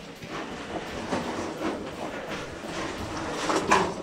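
Footsteps crunching and scuffing over the loose rock and gravel floor of a cave passage, in an uneven run of steps with a louder scrape near the end.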